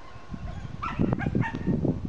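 A dog giving a few short, high yips and whines about a second in, over a low rumbling noise.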